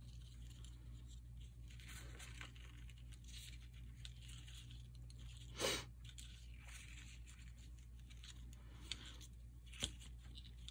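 Faint rustling of paper and thread as hands tie a double knot in sewing thread on a sheet of paper, with one brief louder rustle a little past halfway and a couple of small ticks near the end.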